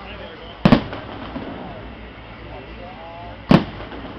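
Aerial firework shells bursting: two sharp, loud bangs about three seconds apart, over the murmur of spectators' voices.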